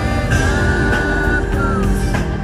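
Live concert music from an arena sound system, recorded on a phone in the audience, with strong bass and a held high note that slides down near the end.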